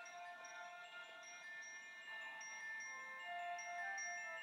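Faint music of ringing, chime-like bell notes playing a melody, several notes overlapping as they ring on: the music of a synchronized Christmas light show.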